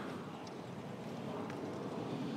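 Fat-tire electric bike with 26 by 4 inch tires rolling slowly on pavement, pedalled without motor assist: a faint, steady rolling noise from the tires and drivetrain, with a couple of faint clicks.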